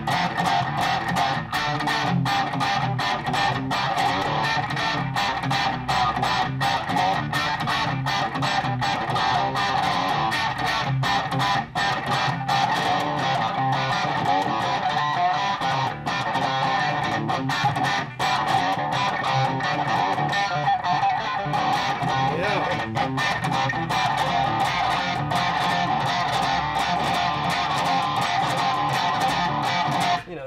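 Gibson SG electric guitar, tuned down, playing a riff with fast, closely spaced picked notes, going without a break.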